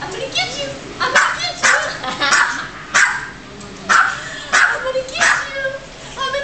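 A dog barking about seven times in a row, sharp loud barks roughly every two thirds of a second.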